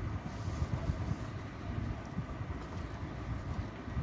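Low, steady background rumble with no speech.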